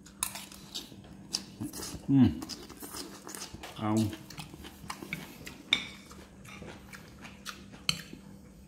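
Metal spoon clinking and scraping against a ceramic plate of rice and greens, in scattered sharp clicks, the sharpest near six seconds and just before the end.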